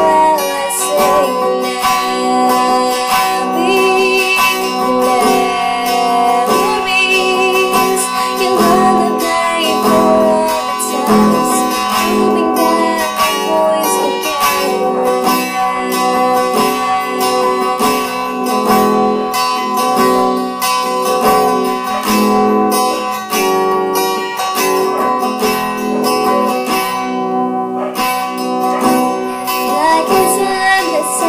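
Strummed acoustic guitar accompanying a woman singing.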